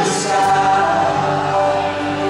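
Live worship song: a group of voices singing together in sustained notes over a church band of guitars and violin.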